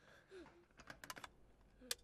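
Faint small clicks and rattles, then one sharper click just before the end as a plug-in night light is pushed into a wall socket.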